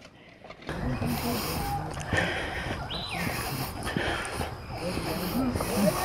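Indistinct, overlapping voices over a steady rushing noise, which starts under a second in after a short quiet moment.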